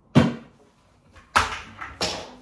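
Two sharp knocks of handling noise about a second apart, each dying away quickly, as the acoustic guitar is swung up close to the recording device.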